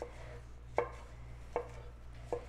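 Shun chef's knife slicing a green bell pepper into strips on a wooden cutting board: three sharp knocks of the blade striking the board, a little under a second apart.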